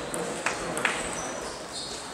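Table tennis ball clicking twice, sharply, about half a second and just under a second in, against the steady hubbub of a hall full of tables in play.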